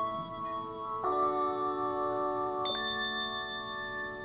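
Handbell choir ringing sustained chords on hand-held bells. A new chord is struck about a second in and another near three seconds in, each left to ring on.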